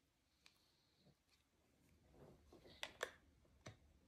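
Near silence with a few faint clicks and taps from a hand handling a clear plastic storage box and a paper sheet, two sharper clicks close together about three seconds in.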